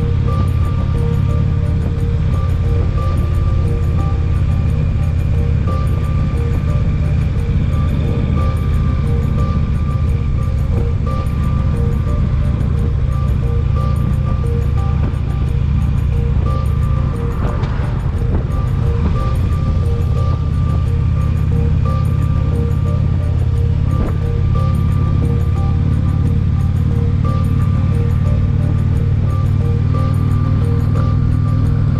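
Steady ride noise from a Harley-Davidson touring motorcycle at cruising speed: a V-twin engine rumble and wind rushing over the fairing and the microphone, with music playing over it.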